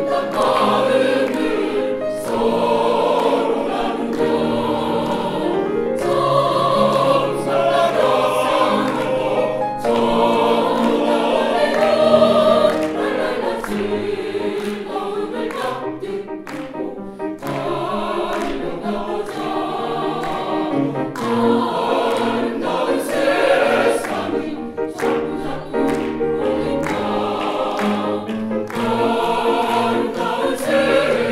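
Mixed choir of women's and men's voices singing a Baroque choral work in full chords, accompanied by grand piano.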